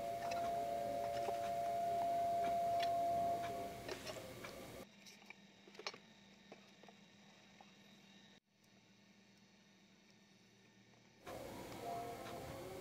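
Light clicks and knocks of hands handling and opening the metal case of a Yaesu FT-1802 mobile radio, over a steady faint tone for the first few seconds. From about five seconds in it drops to near silence with a few faint ticks, and room noise comes back near the end.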